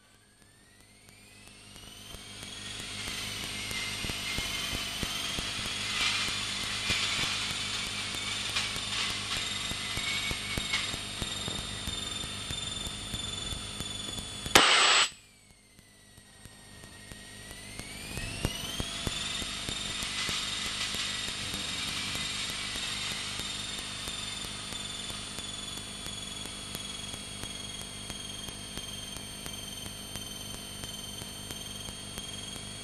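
Light aircraft engine and propeller heard in the cockpit: a droning whine that climbs in pitch over the first few seconds as engine speed builds, then holds steady. About halfway through, a brief loud burst cuts in and the sound drops away; it comes back quiet and climbs in pitch again over a few seconds.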